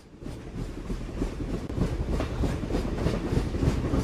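A train rumbling and clattering over the rail joints in a steady rhythm, about three clacks a second, growing louder as it approaches.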